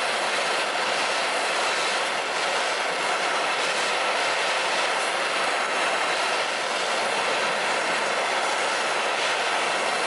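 Hand-held propane torch burning with a steady hissing flame, heating the bowl of a steel spoon held in it.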